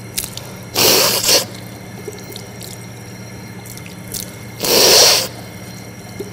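A man rinsing his nose with water at a sink during ablution: two short, forceful snorts through the nose about four seconds apart, with tap water running and dripping into the basin between them.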